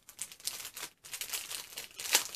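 Crinkling of small jewelry packaging being opened and handled: irregular crackles with a short break about halfway.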